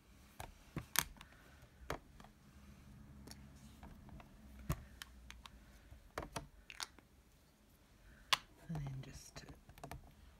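Irregular light clicks and taps, a dozen or so, from small crafting tools (stamps, magnets) being handled and set down on a stamping platform; the sharpest come about a second in and again near the end.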